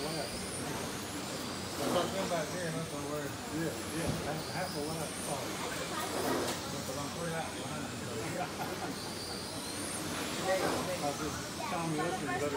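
Radio-controlled touring cars racing on a carpet track: the whine of their motors rises and falls as the cars pass one after another.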